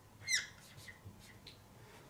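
Whiteboard marker squeaking across the board: one sharp, short squeak a moment in, then a few fainter strokes. The marker is running dry.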